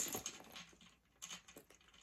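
Faint clicks and rustles of hands handling a small handbag and its strap, loosest in the first half second and again a little past the middle.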